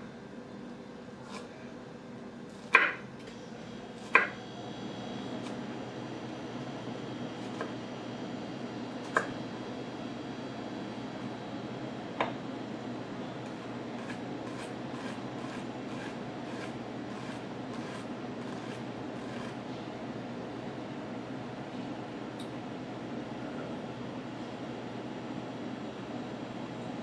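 Chef's knife blade striking a cutting board while a shallot is cut: a few sharp, spaced-out knocks in the first half, then a run of lighter taps, about two a second, from about 14 seconds as the shallot is rock-minced. A steady low hum runs underneath.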